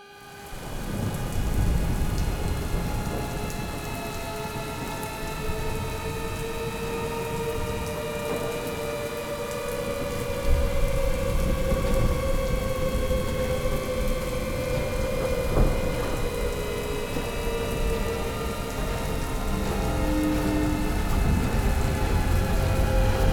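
Steady heavy rain and thunder, fading in over the first second, with sharp thunder cracks about halfway and about two-thirds of the way through. Underneath runs a sustained drone of several held tones.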